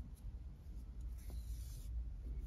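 Faint rubbing rustle of cotton yarn being drawn through knitted fabric with a tapestry needle while seaming, a soft hiss that swells about a second in.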